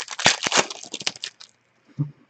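Trading cards being flicked through by hand: a quick run of light clicks and rustles of card stock that stops about a second and a half in.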